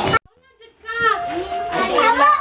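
Music with children singing cuts off abruptly with a click just after the start. After a short near-silence, a group of children's voices starts up and chatters, one voice holding a note briefly.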